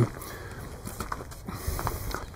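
A few faint, soft footsteps on frozen, snow-dusted ground over low steady background noise.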